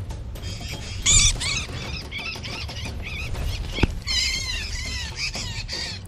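Small songbird chirping in distress, quick high-pitched notes in a bout about a second in and a longer run from about four seconds, the alarm of a parent whose nestling has been taken. Background music runs underneath.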